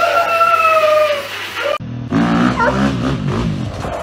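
A drawn-out, wavering animal call for the first couple of seconds. Then it cuts suddenly to a dirt bike's engine revving up and down.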